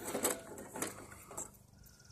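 Hands rummaging through a tackle box: a few short rustles and clicks of small items and packaging being handled, dying away about one and a half seconds in.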